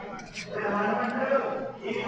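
A person's voice talking, the words not made out.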